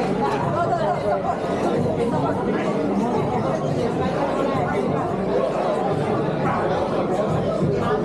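Crowd chatter: many people talking at once at a steady level, with no single voice standing out.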